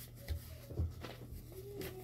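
Quiet handling of papers in a small room: light rustling and two soft low bumps, with a faint voice-like hum in the background.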